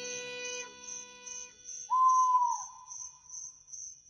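Outro of a nightcore electronic track dying away: held synth notes fade out, and a soft high pulse keeps ticking about two to three times a second. About halfway through, one short whistle-like tone swells and then bends downward.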